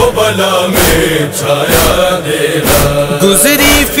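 Chorus of voices chanting the wordless backing of a noha lament over a steady beat of about three strokes every two seconds; near the end a solo voice enters with an ornamented, wavering line.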